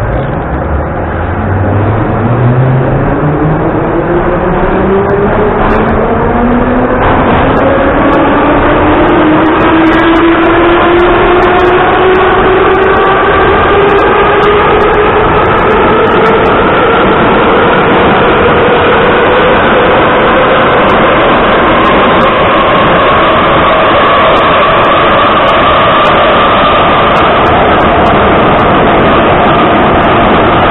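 Ezh3 metro car's traction motors whining as the train pulls away and accelerates, heard from inside the car. The pitch climbs quickly at first and levels off over the second half, over a steady rumble of the running train.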